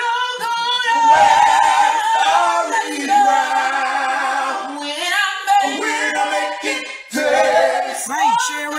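A cappella singing: several voices in harmony holding and bending sung notes, with no instruments.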